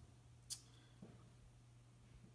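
Near silence with a faint steady low hum, broken by one sharp click about half a second in and a fainter tick about a second in.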